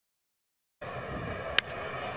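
Dead silence, then, from just under a second in, the steady murmur of a ballpark crowd on a TV broadcast. About a second later comes a single sharp crack of a baseball bat hitting a line drive.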